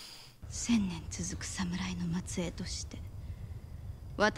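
Quiet dialogue from a TV drama soundtrack: short soft phrases of speech over a low steady hum that starts about half a second in.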